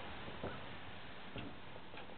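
Quiet background hiss with two faint ticks about a second apart.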